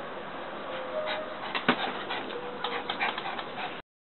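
A dove cooing in short, low notes, with a sharp click about halfway through and a run of lighter clicks near the end.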